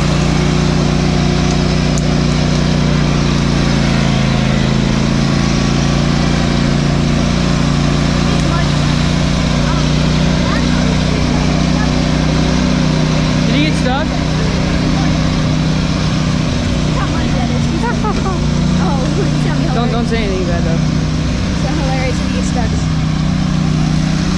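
John Deere lawn tractor's small engine running steadily as it drives along a dirt trail. Voices are heard faintly over it in the second half.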